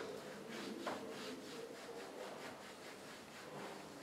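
Hand rubbing a cloth waxing strip down onto the skin of a forearm, in quick, faint, even strokes at about four a second.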